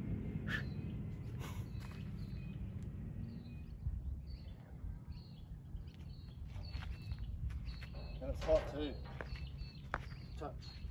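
Outdoor ambience of a low, steady wind rumble on the microphone. From about four seconds in, small birds chirp in short high notes. A brief voice-like call comes near the end.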